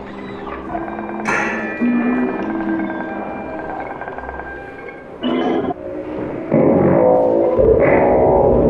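Live electroacoustic laptop music made in Max/MSP: held pitched tones broken by sudden bright bursts about a second in and again near five seconds, then a louder, denser layered texture from about six and a half seconds on.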